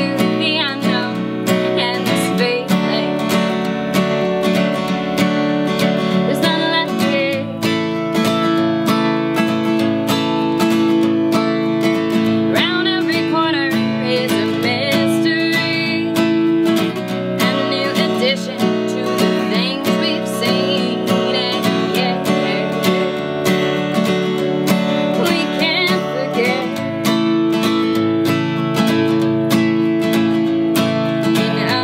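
Acoustic guitar strummed in a steady rhythm while a woman sings phrases over it, a solo live performance of a song.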